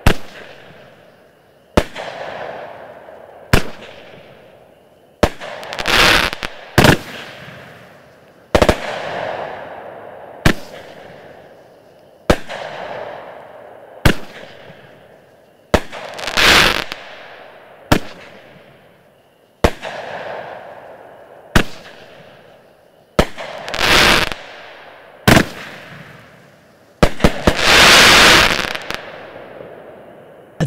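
A consumer firework cake (multi-shot battery) firing single aerial shots about one every two seconds. Each is a sharp bang followed by a hiss that fades as the sparks burn out. A longer, denser and louder burst comes near the end.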